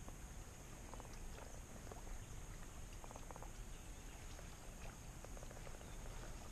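Faint outdoor ambience: small animal calls in short, rapid clicking runs, scattered through, over a steady high hiss and a low rumble.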